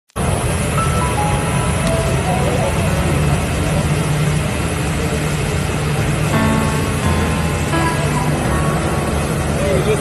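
Loud steady engine hum and hiss, with faint voices under it and a few brief tones.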